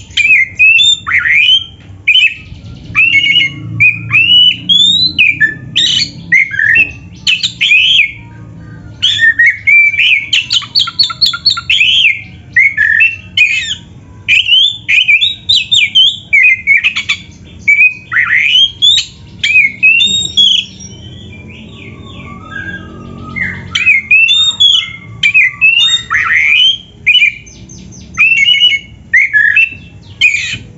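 Oriental magpie-robin (kacer) singing a rapid, varied song of whistled glides, chirps and harsh notes, packed with mimicked phrases of other birds. There is a short lull about two-thirds of the way through.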